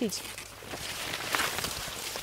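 Maize leaves rustling and brushing against clothing and the camera as people push through tall standing corn, with a few soft steps.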